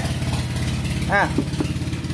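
A small engine idling steadily in the background, a low, even hum that does not change.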